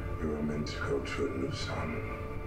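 Soundtrack of a TV drama episode: a low, steady music score under a few quiet spoken words.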